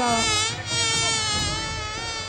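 Buzzing-fly sound effect: a steady insect buzz, wavering slightly in pitch, that dips briefly about half a second in.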